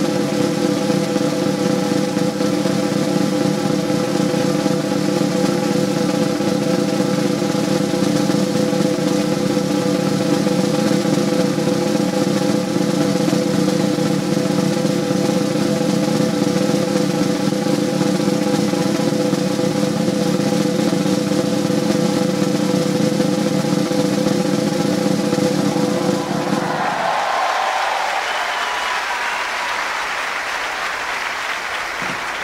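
Live circus band sustaining a long drum roll under a held chord, which stops near the end as applause breaks out.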